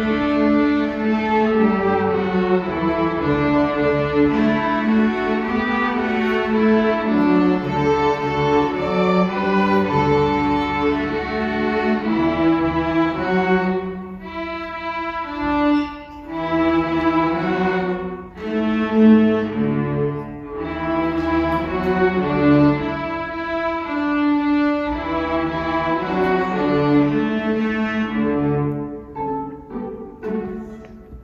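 Middle-school string orchestra of violins, violas, cellos and double bass playing a piece in bowed, sustained chords. There are a few short breaks between phrases in the middle, and it gets softer near the end.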